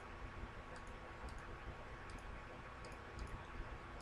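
Faint, scattered clicks of a computer mouse over a low steady hum.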